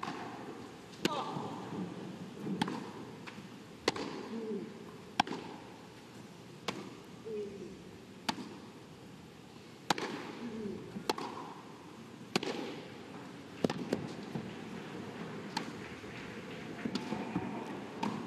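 A long tennis rally: the ball struck by racket strings about every one and a half seconds, each stroke a sharp pop, back and forth some dozen times.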